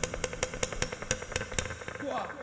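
Acoustic guitar played with muted, percussive strums in a reggae rhythm: a run of sharp chucks about four a second, with hardly any ringing chord between them.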